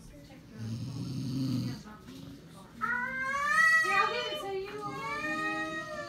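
A man snoring in his sleep: one rough, rattling snore about a second in. From about three seconds in, a long, drawn-out vocal sound wavers up and down in pitch.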